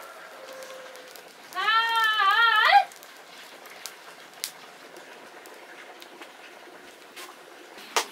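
A goat bleats once, a loud, wavering call lasting just over a second, over the faint crackle of a wood fire.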